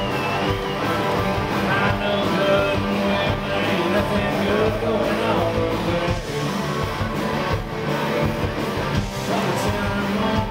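A rock band playing live through a PA: several electric guitars, bass and drums, with a man singing, heard from within the crowd.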